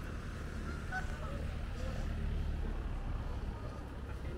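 Waterfowl calling in short, scattered calls over a steady low rumble.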